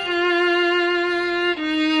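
Solo violin playing long bowed notes with vibrato: one held note, then a step down to a lower note about a second and a half in.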